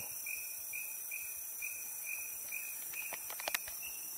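Tropical forest insects calling: a steady high-pitched drone with a soft chirp repeating about two to three times a second. A few faint clicks come near the end.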